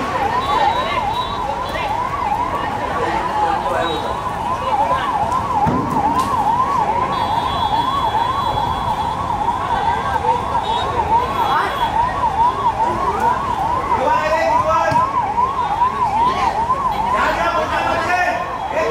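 An emergency vehicle's siren in a fast yelp, its pitch rising and falling about two to three times a second without a break.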